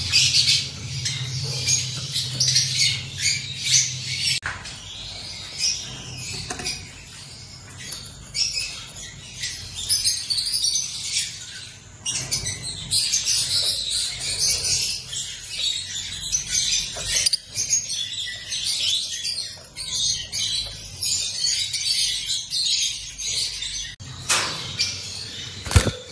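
Caged lovebirds chattering: a busy stream of rapid, high-pitched chirps with brief pauses. The sound changes abruptly twice, about four and a half and twelve seconds in.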